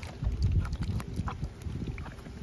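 Water sloshing and splashing in a stainless steel bowl as hands rub and turn fruit to wash it, with small scattered clicks and knocks.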